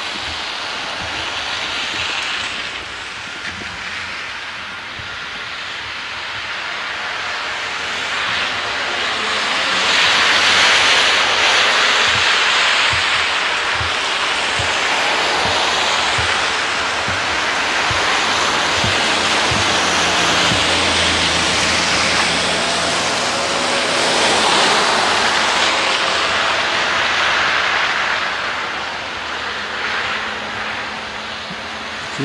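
Cars driving past on a slushy, snow-covered street, their tyre hiss swelling and fading as each goes by, loudest about ten seconds in and again about twenty-five seconds in.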